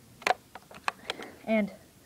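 A few light, sharp clicks from handling a Cyma CM028U airsoft AK-47, the first the loudest.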